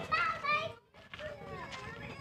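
Children's voices talking, with a short gap of near silence about a second in.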